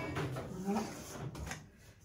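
A few knocks and scrapes of a kitchen utensil against a stainless steel mixing bowl, with a sharp knock at the very start and another a little past halfway.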